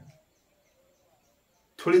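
A man's lecturing voice trails off, then a pause of near silence, only room tone, and he starts speaking again near the end.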